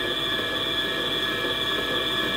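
Electric stand mixer running steadily, its motor giving a constant whine with a few high tones as the beater mixes sponge-cake batter in a stainless-steel bowl.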